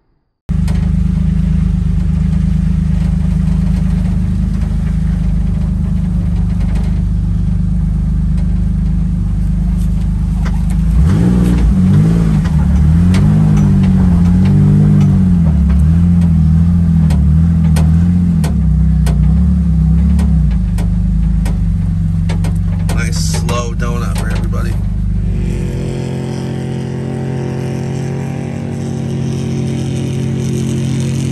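Car engine heard from inside the cabin, running with a deep steady note, then revved up and down over and over through the middle. Near the end the sound changes to a steadier, higher hum.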